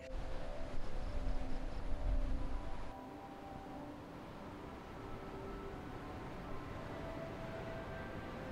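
A fluctuating low rumble for about the first three seconds, then a quieter steady hiss with soft held tones of background music.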